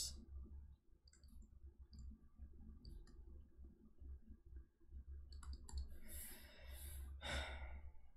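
Faint scattered clicks of a pen stylus on a drawing tablet while handwriting, over a low steady hum, with a person's breathy sigh about six seconds in.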